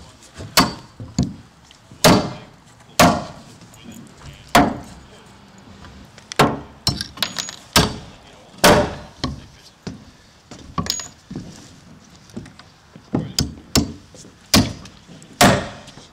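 Hammer driving nails by hand through a 2x plate into a wooden header lying on a plywood deck. More than a dozen sharp blows come at irregular spacing, in short runs with pauses between them.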